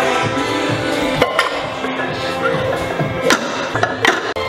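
Background music playing over a few sharp knocks of bumper weight plates being loaded onto a deadlift barbell, two close together about a second in and two more near the end.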